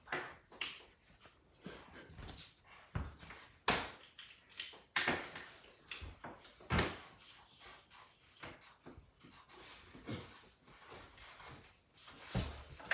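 Felt-tip markers scratching in short strokes on paper, mixed with scattered taps and knocks of markers and hands on a wooden table. The sharpest knock comes about four seconds in.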